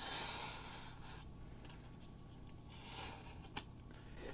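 Faint scraping of plastic parts being handled as the blade controller and LED strip are slid back into the lightsaber blade's plastic tube, fading after about a second, with one light click near the end.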